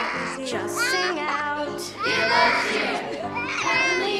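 A young boy screaming and crying in high, wavering cries over stage music and children's voices.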